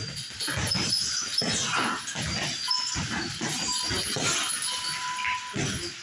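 Irregular thuds of punches landing on heavy punching bags, mixed with short high squeaks a few times in the middle and toward the end.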